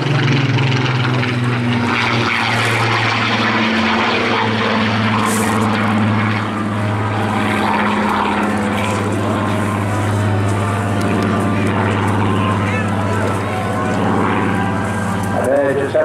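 Rolls-Royce Griffon V12 piston engine of a Spitfire Mk XIX in flight, a steady propeller drone that shifts slightly in pitch as the aircraft banks and climbs away.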